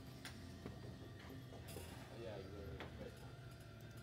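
Faint background voices over low, steady room noise, with a few light clicks and knocks.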